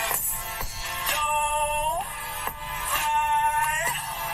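Song with sung vocals over backing music; the voice holds two long notes, each sliding down in pitch at its end.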